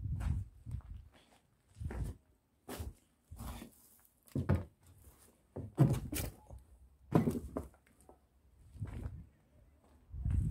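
Footsteps on a debris-strewn floor, uneven and about one a second, each a short thud, the loudest around six and seven seconds in.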